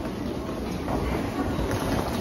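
Railway station concourse ambience: a steady low rumble with the hubbub of people walking through.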